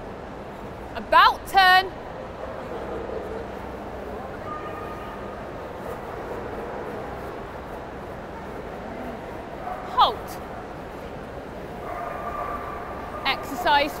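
A dog's short high-pitched yelps: two quick cries about a second in, the first rising in pitch, and one falling cry about ten seconds in, over steady background noise.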